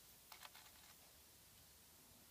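A few faint, crisp crackles of dry leaves in the first second, then near silence.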